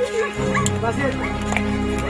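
Film background music with steady held tones, with several short yelping calls over it in the first half.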